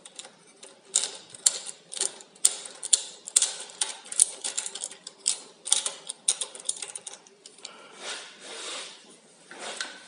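Hand ratchet driving a Powercoil M6 thread-repair tap back out of a freshly cut thread: a string of sharp ratchet clicks, about two a second, that stops about seven seconds in.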